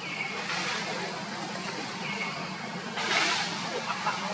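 Steady outdoor background noise with two short, high chirps about two seconds apart, and a brief louder rush of noise a little after three seconds in.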